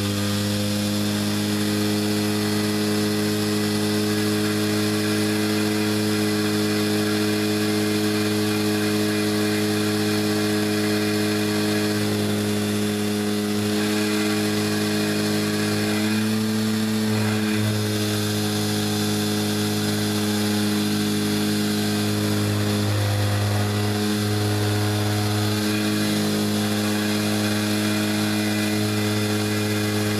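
Electric palm sander rigged as a paint shaker running steadily, vibrating two bottles of acrylic paint clamped in PVC holders on its pad to mix the settled pigment; a loud, even buzzing hum.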